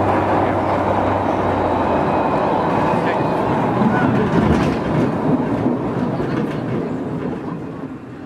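Zierer Tivoli family roller coaster train rolling along its steel track and passing close by, wheels rumbling and clacking, loudest about halfway through before fading out near the end.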